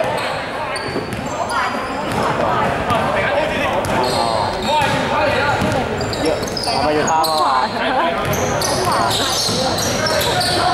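Basketball being dribbled on an indoor court, with short high sneaker squeaks and players and spectators calling out and talking throughout, all echoing in a large hall.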